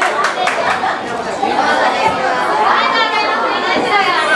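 Indistinct chatter of many voices with no single clear speaker.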